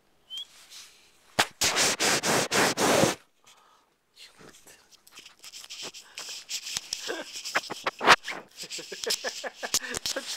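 Handling noise on a pocket camcorder's built-in microphone. A loud rustling burst comes about a second and a half in and lasts under two seconds. From about four seconds in there is a long run of rubbing with many sharp clicks, with the lens covered.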